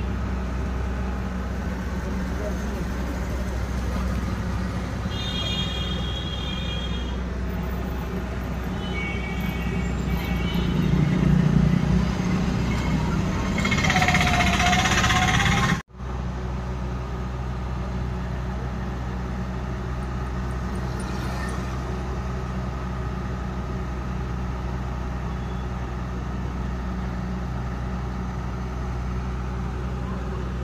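Heavy truck engine running steadily amid street traffic. It swells into a louder rush of vehicle noise from about 11 to 16 seconds in, and the sound briefly cuts out at about 16 seconds.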